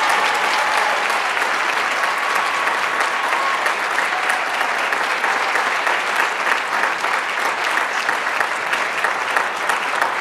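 A room of band members and audience applauding steadily for an award winner.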